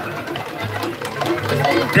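Indistinct talking from several people, with music playing in the background.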